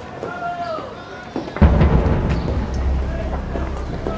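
Faint voices, then a sudden deep boom about a second and a half in that carries on as a steady low rumble.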